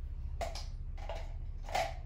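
Two short, soft clicks about a second apart as a felt-tip marker and its plastic cap are handled, over a steady low hum.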